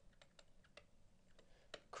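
Faint, irregular clicks and taps of a stylus on a pen tablet while a word is handwritten, about a handful of light ticks over two seconds.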